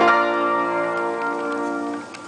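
1928 Chickering & Sons Ampico player piano, driven by an 88-note paper music roll, striking a final chord and letting it ring, slowly fading away.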